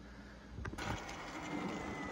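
Quiet room sound, then, under a second in, a cut to a Talaria Sting R electric dirt bike being ridden: faint steady wind and tyre noise with a thin, faint high whine.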